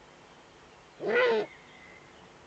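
A Eurasian eagle-owl gives a single call, about half a second long, whose pitch rises and then falls, about a second in.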